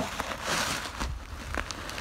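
Footsteps and body movement rustling and crackling in dry fallen leaves and grass, loudest about half a second in, with a few small crackles.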